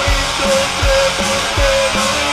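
A post-hardcore band playing an instrumental passage: electric guitar with a sustained note over drums, with regular kick-drum beats and a steady cymbal wash.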